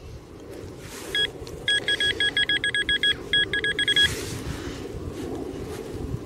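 A metal detector beeping rapidly at a steady pitch, about six beeps a second with one brief break, as it is held close to a metal target in a dug plug of soil.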